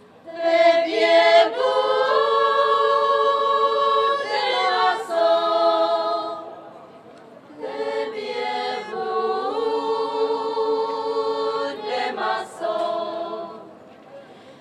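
A women's folk choir singing a Moravian folk song a cappella, in two long phrases with a short breath between them.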